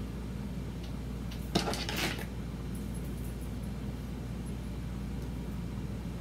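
Steady low hum, with a brief rustling scrape about one and a half seconds in as hands handle and arrange the wig's synthetic bangs.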